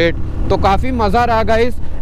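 A man talking over the steady low drone of a motorcycle being ridden.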